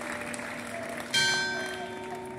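Church bell tolling: one stroke about a second in, its tones ringing on and slowly fading, over the noise of a crowd.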